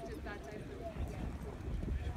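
Hoofbeats of a pony cantering on arena sand, heard under distant voices and a steady low rumble.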